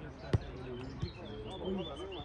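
A football being kicked: one sharp thud about a third of a second in, the loudest sound, then a lighter knock of the ball about a second in. Players' calls and shouts carry on in the background.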